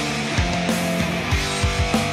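Background rock music with electric guitar and a steady drum beat, about three beats a second.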